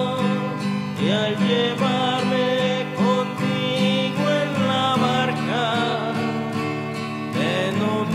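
Music: a Spanish-language Catholic hymn, a sung melody over acoustic guitar.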